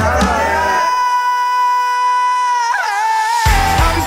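Rock band in a break: the drums and bass drop out about a second in, leaving one long steady high note that wavers near its end. The full band comes back in about three and a half seconds in.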